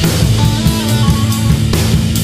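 Heavy psychedelic rock band playing: guitar holding long notes over bass and drum kit, with cymbal-backed drum hits at the start and again near the end.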